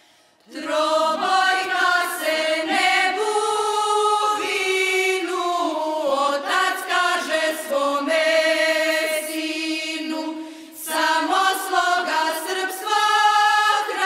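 Choir singing a song in Serbian, coming in about half a second in, with a short break between lines about ten and a half seconds in.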